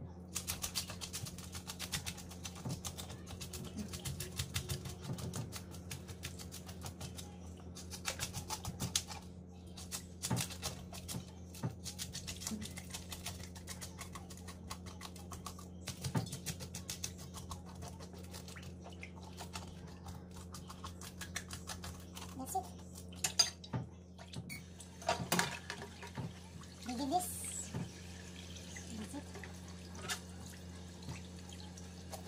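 A raw fish being handled and cleaned in a stainless steel sink: a long run of rapid scratching and clicking, busiest in the first third, over a steady low hum.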